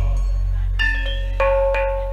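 Javanese gamelan between sung phrases: a few struck metallophone notes that ring on, over a steady low hum.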